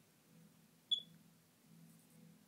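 A phone camera's shutter sound going off once about a second in: a single short, sharp, high-pitched click-beep over a faint low hum.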